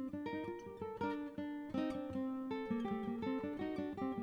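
Background music: a plucked acoustic guitar picking a melody, several short notes a second.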